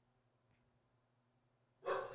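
Near silence, then near the end a short breath out close to the microphone.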